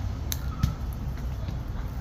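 Clicker of a Daiwa Saltiga 15H lever-drag fishing reel being tried, sounding faintly as the spool is turned, with one sharper click about a third of a second in; it is not that loud.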